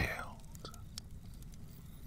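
A pause in close-miked narration: a soft breath fades out in the first half second, then low room noise with a few faint mouth clicks.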